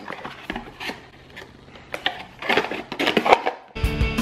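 Scattered clicks and short rustles of a new camera's cardboard box and plastic packaging being handled. Background music starts suddenly near the end.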